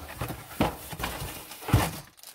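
Plastic zip-lock bags rustling as they are handled, with a few light knocks, the loudest shortly before the end.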